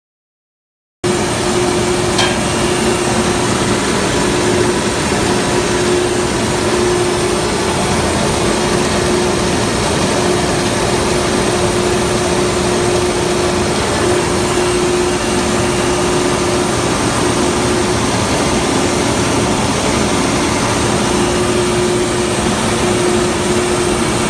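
A Warman 8/6 EAH slurry pump running, heard close to its packing gland: loud, steady mechanical noise with a steady hum. It starts abruptly about a second in.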